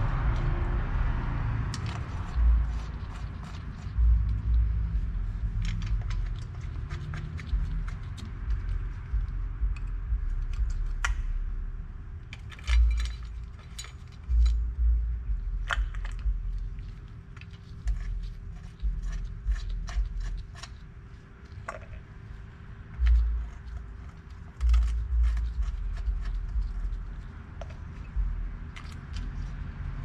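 Steel cover bolts being threaded by hand into a rear differential cover: scattered light metallic clicks and scrapes, with dull low thumps now and then and a faint steady hum underneath.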